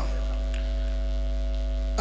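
Steady electrical mains hum from the microphone and sound system: a constant low drone with several fainter steady tones above it, unchanging throughout.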